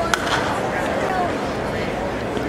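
A single sharp crack as the batter swings at a pitch, heard over steady chatter and voices from the stands.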